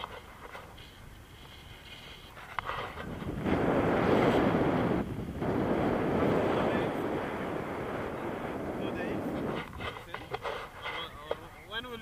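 Wind noise on the microphone of a camera on a tandem paraglider in flight. It is fairly quiet at first, then swells loud for several seconds in the middle before easing off, with a voice near the end.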